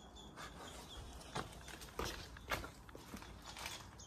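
Faint, irregular footsteps crunching and rustling through undergrowth and fallen debris, with a few sharper steps standing out.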